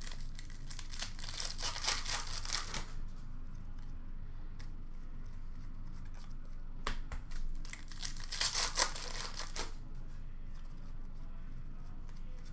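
Trading-card pack wrappers being torn open and crinkled, in two crackling stretches of about three seconds each, the second starting about seven seconds in.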